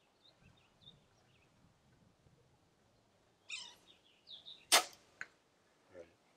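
A compound bow being shot: one sharp, loud crack of the string release about three-quarters of the way in, with a fainter click about half a second later. Faint high chirps sound before the shot.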